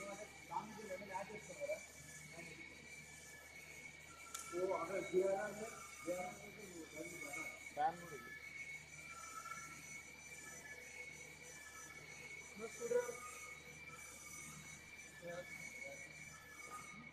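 Faint, indistinct voices talking in short bursts over a steady high-pitched whine and a low hum.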